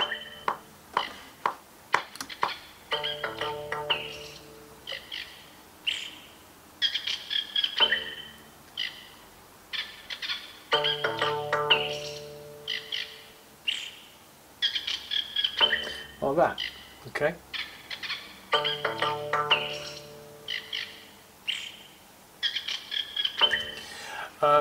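A looped demo track in which cut-up cheeps and calls of small songbirds such as finches and robins are edited to land in time with the beat, mixed with clicky percussion and short pitched passages. The same loop repeats about every eight seconds, roughly three times.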